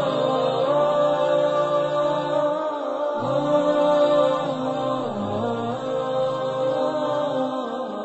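Wordless vocal chanting in the style of an Islamic nasheed: voices holding long notes that bend slowly in pitch, with brief dips about three and five seconds in.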